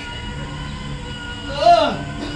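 A steady held drone runs throughout. Near the end a single loud voiced cry rises and then drops steeply in pitch.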